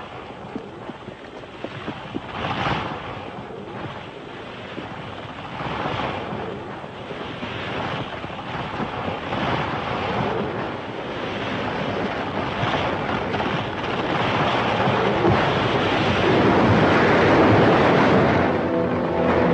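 A giant sequoia falling: a long rushing, crashing roar with a few sharp cracks, building in loudness to a peak near the end.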